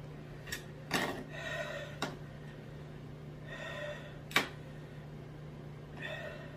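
A man breathing out hard twice, with a few sharp clicks or taps; the loudest click comes about four seconds in. A steady low hum runs underneath. The hard breathing is him coping with the burn of a very hot sauce.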